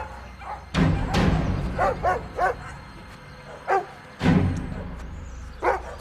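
Dogs barking in short bursts, about five times, over a film score with two sudden low hits.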